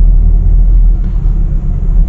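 Steady low rumble of a Renault Scala heard from inside the cabin while driving on the road: its 1461 cc diesel engine running together with road and tyre noise.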